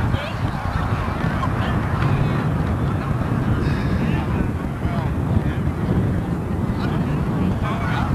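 Wind buffeting the microphone in a steady low rumble, with indistinct voices of people talking around it.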